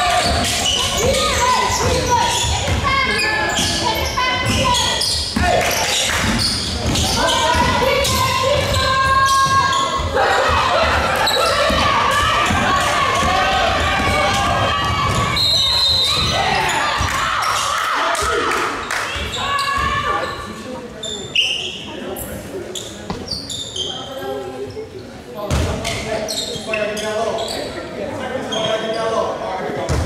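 Basketball bouncing on a hardwood gym floor during live play, mixed with players' and spectators' shouts, all echoing in the gym. The action quiets after about twenty seconds as play stops for a free throw.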